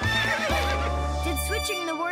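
A cartoon pony whinnying, a high quavering call at the start, over background music whose low bass line stops shortly before the end.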